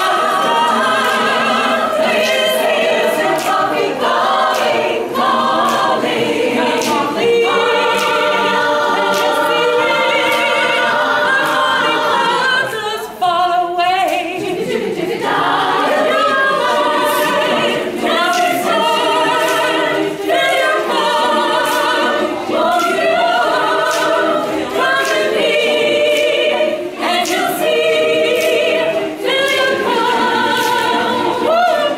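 Women's choir singing a cappella in held, multi-part harmony, with a brief thinner, quieter passage about halfway through.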